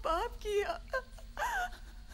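A woman crying and wailing in a high, wavering voice, her words breaking into sobs.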